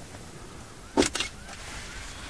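Two sharp knocks about a fifth of a second apart, about a second in, over a low steady background, with faint short rising chirps like a small bird calling.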